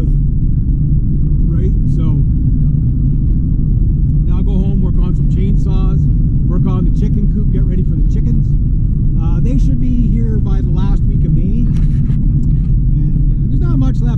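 Steady low road and engine rumble heard inside the cabin of a moving Honda car, with a voice talking on and off over it.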